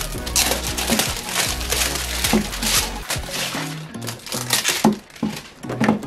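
Cardboard toy box packaging being opened by hand, with crinkling and rustling that comes and goes in quick bursts, over background music with low held notes.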